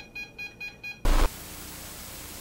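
Electronic EMF meter beeping rapidly, about six short beeps a second, as it reacts during a ghost hunt. About a second in, a loud burst cuts it off and steady static hiss follows.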